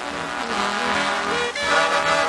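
Swing dance band playing an instrumental passage from a 1940s shellac 78 rpm record, with brass and saxophones holding full chords and a note sliding upward near the end.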